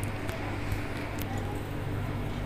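An aluminium pressure-cooker lid set loosely on the pot, with only a few faint light clicks, over a steady low hum.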